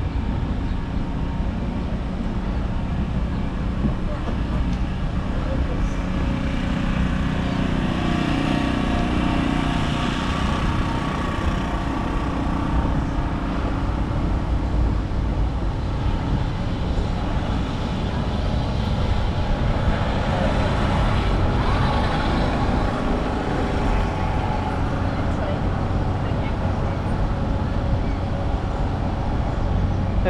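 Street traffic: a steady drone of vehicles on the adjacent street. Engine noise swells in the first half as a heavier vehicle goes by.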